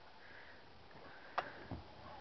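Faint background hiss broken by a single sharp click a little past halfway, then a soft low thump just after.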